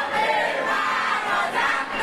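A group of high-school students shouting together in many overlapping voices.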